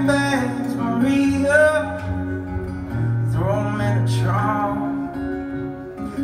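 Live country song played on acoustic and electric guitars, in the gap between two sung lines, with bending melodic phrases over a steady low note.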